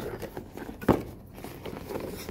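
Cardboard gift-bundle box handled on a wooden table, with soft rustling and small taps and one sharp knock about a second in.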